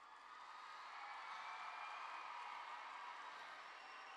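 Faint applause and crowd noise from a large audience, building over the first second and then holding steady as the song ends.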